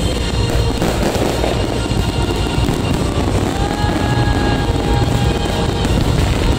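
Fireworks crackling and bursting continuously in a pyromusical display, with music playing loudly alongside.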